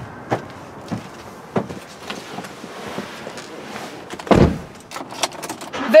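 A car door of an SUV shutting with one solid thump about four seconds in. Light clicks and rustling come before it, and a couple more clicks come after.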